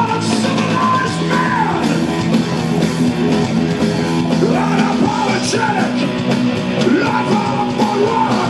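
Hard rock band playing live and loud: distorted electric guitars, bass guitar and drums.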